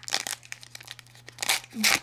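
Foil wrapper of a baseball card pack crinkling and tearing as it is ripped open by hand, with two louder rips near the end.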